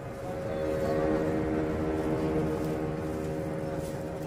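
A steady drone with several held tones over rumbling street noise, typical of a motor vehicle engine running nearby in traffic.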